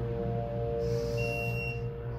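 Otis hydraulic elevator car running with its doors shut: a steady low hum. A lingering ringing tone dies away in the first second, and a short high whine sounds about a second in.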